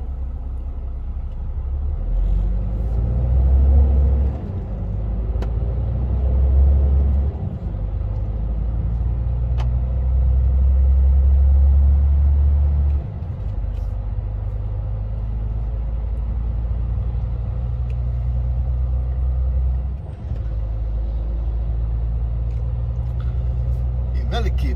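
Heavy truck's engine and road rumble heard from inside the cab while driving: a deep drone that swells and drops back sharply about four times.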